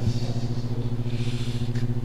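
Steady low electrical hum from a microphone and sound system, a buzz with several even overtones.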